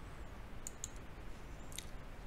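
Three faint clicks of a computer mouse, two in quick succession just under a second in and one near the end, over a low steady hum.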